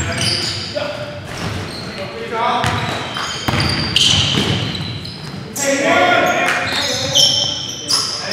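Basketball game in a large gym: a ball bouncing on the wooden floor, sneakers squeaking in short high chirps, and players calling out, all echoing in the hall.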